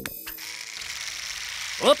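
Cartoon sound effect of an electric toothbrush switched on and buzzing steadily; a voice cuts in near the end.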